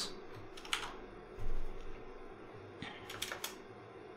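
A few scattered computer keyboard keystrokes: a single click early on and a short cluster about three seconds in, over a faint steady hum.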